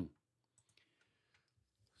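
Near silence: room tone with a few faint clicks about half a second to a second and a half in.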